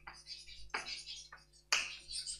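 Chalk writing on a blackboard: a few sharp taps and short scratching strokes, the loudest about three-quarters of a second in and near the end.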